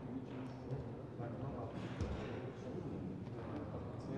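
Indistinct background chatter of a waiting crowd, with a single dull thump about two seconds in.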